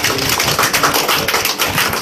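A small group of people clapping, a dense run of irregular hand claps.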